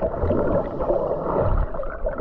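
Seawater sloshing and gurgling against a waterproof camera at the water's surface, muffled and uneven in level.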